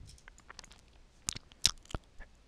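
A quiet pause with a few faint, short clicks, the clearest ones about a second and a half in and just before the end.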